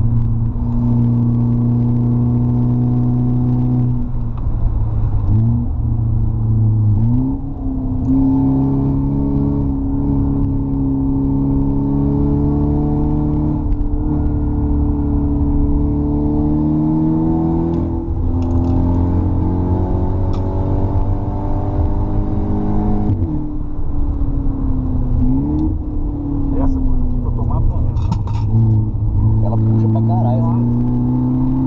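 A car's engine running hard on a track lap, its pitch shifting down in a few steps in the first seconds, climbing slowly for about ten seconds, then dropping and rising again toward the end as the car brakes and accelerates through corners.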